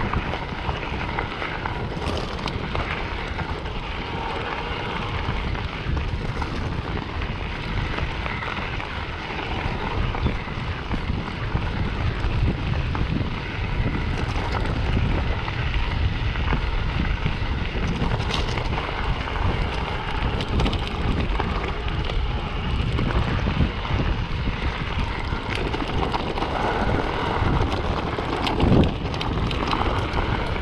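Wind noise on the microphone over mountain bike tyres rolling on a gravel track, with the crunch of gravel and occasional clicks and knocks from the bike over bumps.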